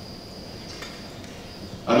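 A pause in a talk over a hall's sound system: low room noise with a steady, thin, high-pitched whine and a faint click, before a man's voice resumes near the end.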